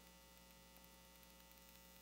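Near silence: a faint, steady electrical hum from the sound system.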